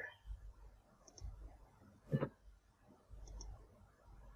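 Computer mouse clicking: a faint double-click about a second in and another near the end, with a louder single click or knock about halfway.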